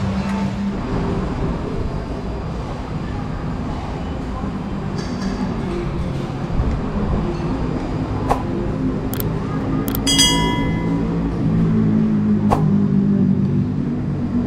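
Street-stall ambience: a steady low rumble of traffic with background voices. A few sharp clicks come near the end, and a short ringing clink sounds about ten seconds in.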